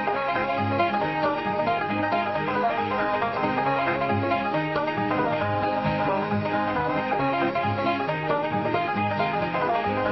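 Country-style TV opening theme music with a quick plucked banjo and guitar accompaniment, playing steadily.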